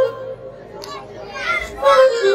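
Stage music cuts off at the start, leaving a quieter stretch of children's voices calling out. Near the end come a few high, sliding voice sounds.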